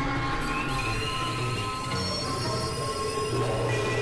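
Experimental electronic drone from synthesizers (Novation Supernova II and Korg microKORG XL): many sustained high tones stacked over a low pulsing rumble, with one tone gliding upward about half a second in.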